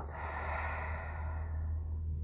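A slow, steady exhale through the mouth during a crocodile-breath diaphragm drill, breathing out while lying face down against the resistance of body weight on the floor. A low steady hum sits underneath.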